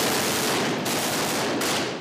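Sustained automatic gunfire: a rapid, continuous string of shots.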